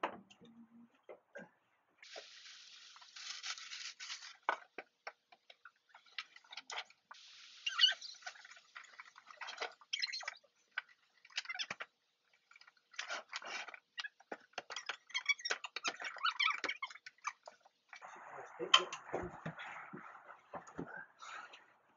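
Someone rummaging through boxes and bags in a loft: rustling and scraping with many small knocks and clicks, in short spells. A laugh near the end.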